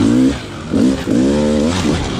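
Enduro dirt bike engine running on a trail ride, its pitch rising and falling through a few short throttle blips over a steady low drone.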